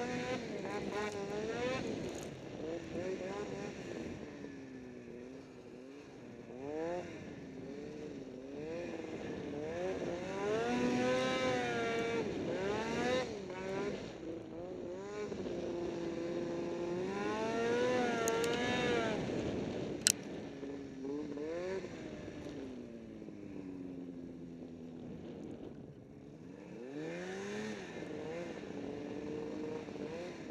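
Ski-Doo snowmobile engine revving up and down over and over, its pitch rising and falling every second or two. A single sharp click comes about two-thirds of the way through.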